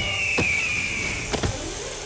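Eagle screech sound effect: one long cry falling in pitch, with two thuds as a body hits the floor.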